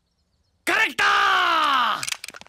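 A loud, drawn-out human yell after a brief near-silent pause: a short cry, then a long one that falls steadily in pitch.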